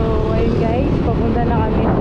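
Wind rushing over the camera microphone and a motorcycle engine running while riding along a road. A voice is talking through the noise for the first second and a half.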